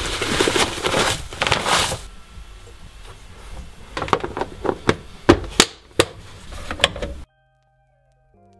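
Coffee pouring from a bag into a plastic storage container with a dense rustling hiss for about two seconds. Then a string of sharp clicks and knocks as the container's plastic clip-lock lid is handled, fitted and snapped shut. The sound cuts off suddenly about seven seconds in.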